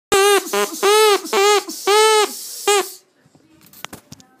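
Drinking straw with its end cut to a point, blown like a double reed: six short, loud, buzzy honks on one note, each bending up and then down in pitch, ending about three seconds in.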